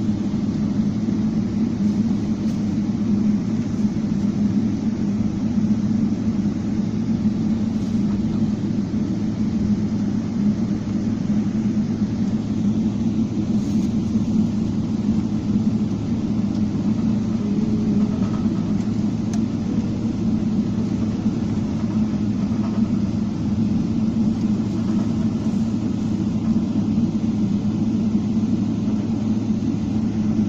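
Jet airliner cabin noise while taxiing: a steady low hum and rumble from the engines and the moving aircraft.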